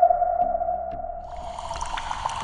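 Synthesised logo-animation sting: one steady held tone, like a sonar ping, that slowly fades, joined about a second and a half in by a bright shimmering, sparkly layer with faint ticks.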